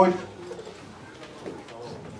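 A man's amplified voice trailing off at the very start, then a pause of faint room tone with a few soft ticks.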